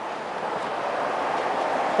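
Steady outdoor rushing noise with no distinct events, growing slightly louder.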